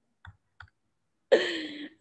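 Two faint short clicks, then a voice starts speaking near the end.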